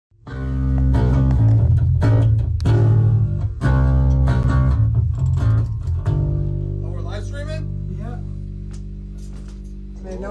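Amplified electric guitar playing a loud, heavy, low riff of struck chords for about six seconds. The last chord is then left ringing and slowly fades.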